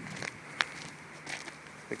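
Footsteps on gravel and dirt, a few faint steps with one sharp click about half a second in.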